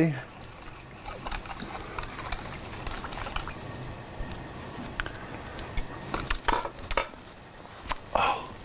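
A spoon clinking lightly in a bowl as a soy and rice-vinegar dipping sauce is stirred, with scattered clinks, more of them near the end. Under them a pan of gyoza hisses steadily as the water in it boils off.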